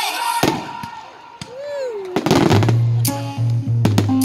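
Aerial firework shells bursting: several sharp bangs and a burst of crackling near the middle, over music. A steady low bass line comes in about halfway through.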